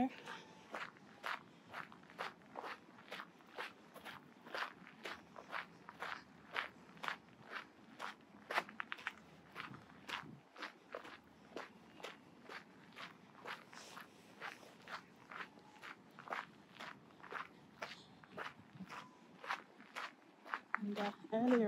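Footsteps walking at a steady pace on a fine-gravel path, about two steps a second, picked up close by a handheld phone's built-in microphone.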